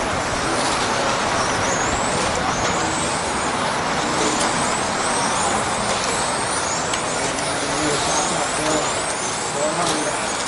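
Electric 1/10-scale RC touring cars racing on asphalt, their 21.5-turn brushless motors whining up in pitch again and again as the cars accelerate, over a steady hiss.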